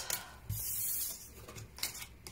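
Tarot cards being slid and lifted off a wooden tabletop. A soft tap comes about half a second in, then a brief papery rub.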